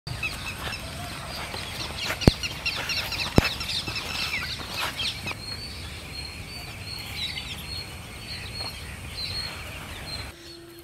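Birds chirping and calling in the open, busy at first, then settling into a repeated high note from about halfway. Two sharp clicks stand out, about two and three and a half seconds in.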